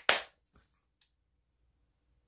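One sharp hand clap right at the start, dying away within a quarter second.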